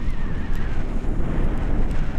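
Wind buffeting the camera microphone during paraglider flight: a loud, steady rumble, with a faint wavering high tone in the first second.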